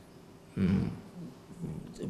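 A man's brief hesitation sound, a low, steady hummed 'mmm' lasting about half a second, starting about half a second in.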